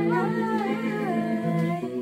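A young woman humming or singing a wordless melodic line over a recorded karaoke backing track, the voice gliding up and down before falling away near the end.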